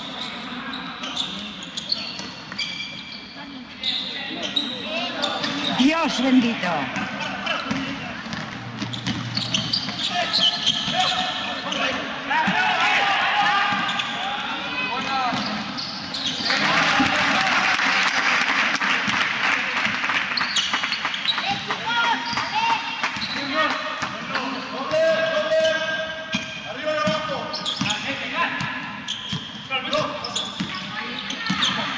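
Game sound of basketball in a large echoing gym: the ball bouncing on the court amid players' and spectators' shouts and calls. A louder, denser wash of noise rises about a third of the way in and lasts several seconds.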